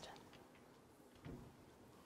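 Near silence: room tone in a presentation room, with one faint short sound a little over a second in.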